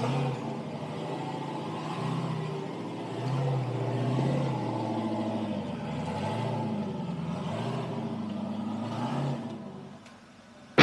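Rock crawler buggy's engine revving in repeated swells, the note rising and falling as it works up over a rock ledge, then fading away near the end.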